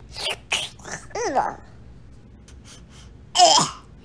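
A few short puffs of breath, a brief falling vocal sound, then one loud sneeze about three and a half seconds in.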